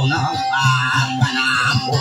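Acoustic guitar strummed as accompaniment to a voice singing a verse into a microphone.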